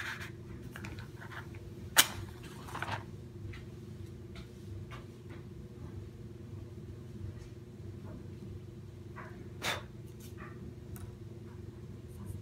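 A wooden match struck on the box about two seconds in: a sharp scratch followed by about a second of hiss as it flares. A second, softer scratch comes near the end, over a steady low hum in the room.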